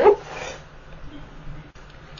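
The drawn-out end of a man's spoken "so", cut off just after the start, then a pause of faint, steady background hiss.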